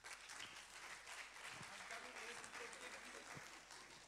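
Congregation applauding: a steady patter of clapping that eases off near the end, with faint voices under it.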